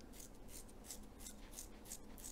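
Faint, quick scratchy strokes, about four or five a second: the bristles of a flat-faced toothbrush being flicked to spatter thinned acrylic paint onto a canvas.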